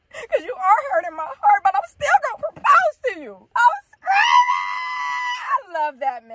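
A woman's wordless, emotional vocalising, then one long high-pitched squeal lasting about a second and a half, starting about four seconds in.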